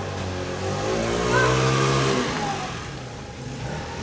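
A motor vehicle driving past, its engine sound swelling over the first two seconds and then fading away.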